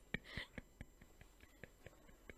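A woman's soft, stifled breathy laugh, a short puff of air about half a second in, over quiet room tone with a faint run of clicks, about five a second.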